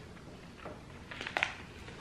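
Faint crinkling of a plastic candy bag being handled, in a few short bursts around half a second and a second and a half in.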